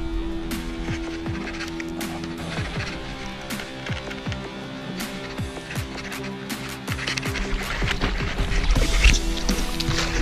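Background music with sustained notes. Near the end, water splashing as a hooked Australian salmon thrashes at the surface beside the board.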